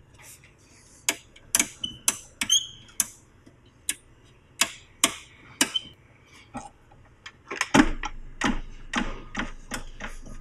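Irregular clicks and knocks of hands handling a heavy metal-and-acrylic manufacturing test fixture, some with a short metallic ring. About eight seconds in comes a denser run of knocks over a low rumble as the fixture is swung over on its pivot.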